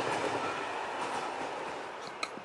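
Steady running noise of a moving passenger train heard from inside the carriage, slowly fading.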